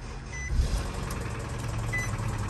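Nissan car's engine running with a low clattering note that sounds like a 70s diesel, swelling about half a second in, with two short high chime beeps. The customer blamed the noise on the belt; the mechanic, who found the engine three quarts low on oil, takes it for an engine that is done for.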